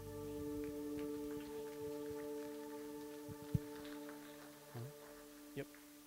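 A held synth-pad note with its overtones ringing on and slowly fading as a worship song ends. A single low thump is heard about three and a half seconds in.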